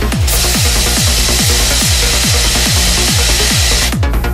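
Trance music with a steady kick drum about twice a second, overlaid by a loud hiss of stage CO2 jets blasting for about three and a half seconds, starting and stopping abruptly.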